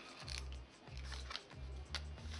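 Faint crackle and rustle of paper and card as hands handle a scrapbook album page, a few short crisp clicks, over soft background music with a low, evenly pulsing beat.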